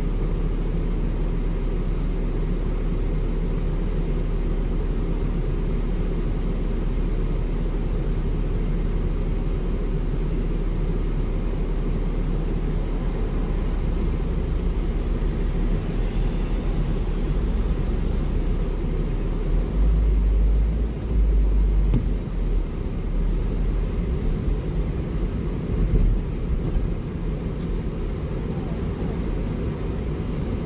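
Low rumble of a car's engine and cabin as picked up by a dashcam, steady while waiting in traffic. It grows louder and uneven in the second half as the car moves off.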